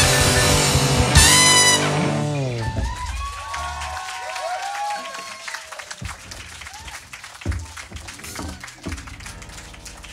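A live jazz band's final chord held by trumpet and band, cut off with a last hit about a second in and ringing away over the next second. The audience then cheers and claps, thinning out as the band leaves the stage.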